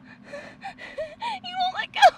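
A woman's frightened, high-pitched wordless whimpers and gasps, ending in a louder falling cry.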